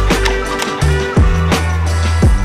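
Background music: a beat with deep, sustained bass notes, drum hits that drop in pitch, and regular sharp clicks on top.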